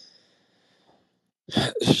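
A pause in a man's speech over a voice call: a faint, short breath-like noise at the start, then silence, and his speech resumes about one and a half seconds in.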